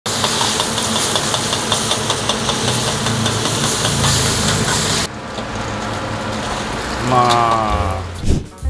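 High-pressure gas wok burner running, with sauce sizzling in the hot wok and a metal spatula scraping it. About five seconds in the sizzle cuts off suddenly, leaving the lower noise of the burner, and a short falling tone sounds near the end.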